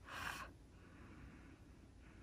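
A short airy hiss, then a faint, drawn-out sniff as a freshly applied perfume is smelled on the skin.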